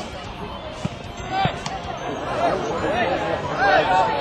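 Several voices calling and shouting at once across a football pitch, with a few sharp thuds near the middle, typical of a football being kicked.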